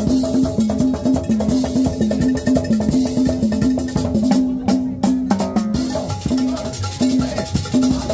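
A live band playing upbeat Latin dance music, with drums and other percussion over a steady, repeating bass line.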